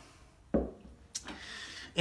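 Tools handled on a workbench: a dull thump about half a second in, then a sharp click about a second in.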